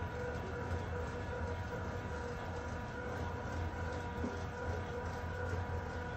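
Steady low mechanical hum with a faint constant whine, from the rod break-test rig's motor slowly loading a swimbait rod blank.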